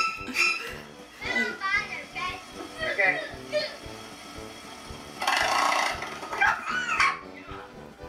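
Young children's voices chattering and calling out over steady background music, with a loud burst of noise lasting about a second about five seconds in.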